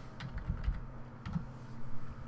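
A few keystrokes on a computer keyboard, over a faint steady low hum.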